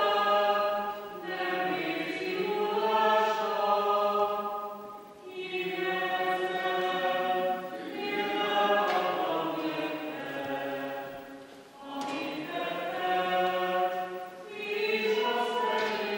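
A choir singing slowly in long, held phrases, each a few seconds long with short breaks between them.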